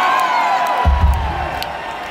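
Concert audience in a large hall cheering and shouting in response to the singer's banter, with a deep low note from the stage about a second in.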